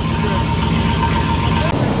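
Corvette V8 engine in a custom Polaris Slingshot-based roadster idling steadily with a deep rumble, cutting off abruptly near the end.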